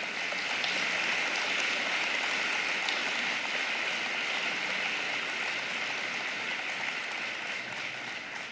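Audience applauding steadily: dense, continuous clapping.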